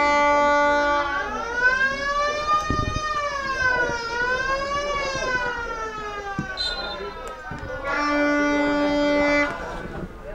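Spectators' noisemakers at a football match: a steady horn blast, then a long siren-like wail that rises and falls in pitch twice over about six seconds, then another steady horn blast of about a second and a half.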